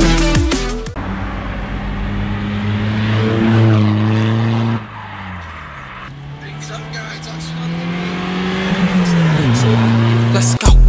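Remapped VW Bora 1.9 TDI diesel engine pulling hard, its note rising steadily for a few seconds. After a cut, the engine is heard again, climbing and then dropping in pitch as the car passes close by near the end.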